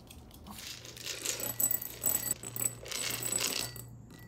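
Dry dog kibble poured from a plastic jar into a small ceramic bowl. The pellets rattle and patter in quick clusters from about a second in until near the end.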